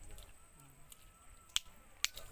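A single sharp click about one and a half seconds in, over a quiet background with a faint voice.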